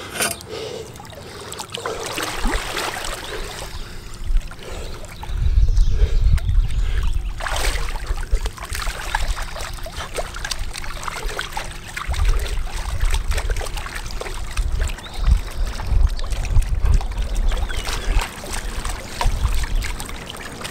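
Pool water splashing and lapping as a swimmer treads water with an egg-beater kick, the surface slapping close to the microphone. Heavy low rumbles come in about five seconds in and again through the second half.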